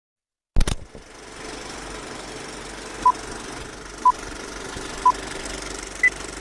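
A sudden loud clunk about half a second in, then a steady engine-like running noise with a fast rattle. Over it, three short electronic beeps a second apart, then a higher beep at the very end, like a start countdown.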